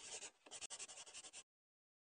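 Pen writing on paper in a run of quick strokes, as of a signature being signed. It cuts off about a second and a half in.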